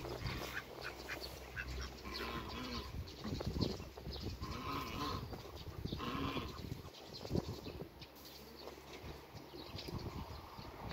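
Three drawn-out farm-animal calls in the middle, each under a second long and spaced a second or two apart, over light pecking and rustling.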